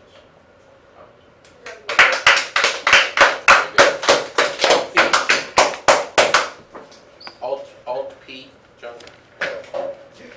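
Applause from a small group of people, starting about two seconds in and lasting about five seconds, followed by a few brief voices.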